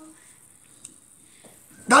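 A pause in a man's speech: quiet room tone with a faint click about a second in, then his voice comes back in near the end.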